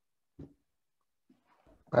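Near silence over an open call line, broken by one short faint sound about half a second in; a voice starts speaking at the very end.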